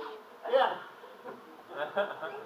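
Two short vocal sounds from people in the room, about half a second in and again near the end, over a faint steady hum.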